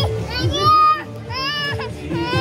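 A toddler cries out twice in high-pitched wails, each about half a second long, with background music playing.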